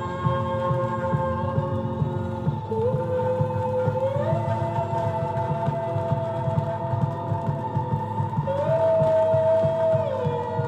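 Music: long held tones that slide up or down between a few notes, over a steady pulsing low beat.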